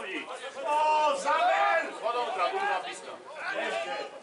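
Men's voices talking and calling out, more than one voice.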